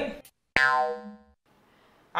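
A cartoon 'boing' sound effect: one sudden, ringing twang about half a second in that dies away within about a second.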